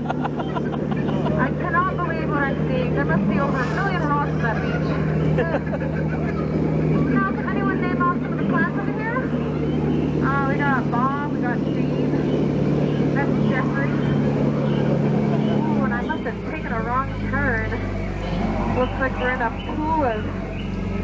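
Jungle Cruise tour boat's motor running with a steady low hum that shifts in pitch about sixteen seconds in, under people's voices and repeated short rising-and-falling calls.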